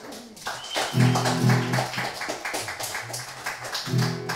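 Acoustic guitar strummed without singing. Repeated strums build up, with low chords ringing out from about a second in and again near the end.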